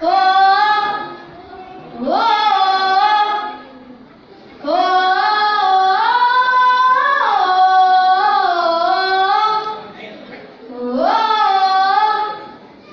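A boy singing a Hindi patriotic song solo into a microphone, unaccompanied. The phrases are sung on long held notes that slide between pitches, with short breaks between them and the longest phrase of about five seconds in the middle.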